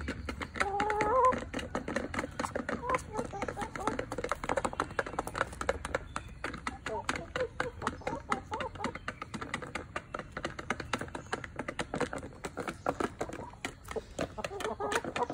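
Backyard chickens feeding: rapid, irregular clicking of beaks pecking feed from a plastic feeder dish, with hens clucking throughout and a louder rising call about a second in.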